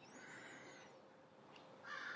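Near silence: room tone, with a faint high-pitched call that falls away within the first second.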